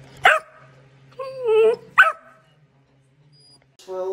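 Puppy barking: two short, sharp yaps about a second and a half apart, with a longer, drawn-out bark between them.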